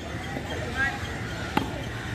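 A cricket bat strikes a tennis ball once, a single sharp knock about one and a half seconds in, over men's voices.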